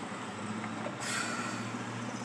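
Car idling, heard from inside the cabin as a steady low hum with hiss; the hum and hiss grow louder about a second in.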